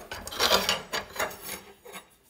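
Scraping and rubbing of an aluminium hanging rail against a maple wood print panel as it is handled: a few uneven rasping strokes, the loudest about half a second in.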